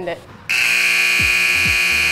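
Basketball scoreboard horn sounding as the game clock hits zero, a loud, steady buzz that starts abruptly about half a second in and holds: the signal that time has expired.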